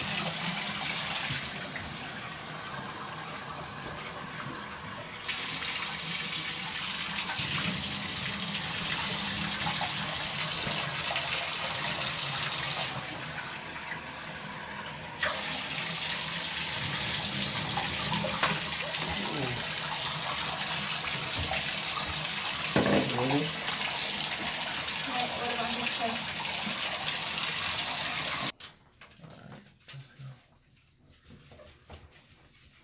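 Water running into a bathtub from the tap while a wet dog is washed in it; twice the flow sounds thinner for a few seconds, and the water stops suddenly near the end.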